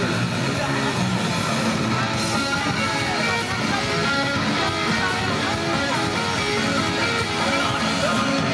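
Punk rock band playing live: distorted electric guitar, bass and drums at a loud, steady level.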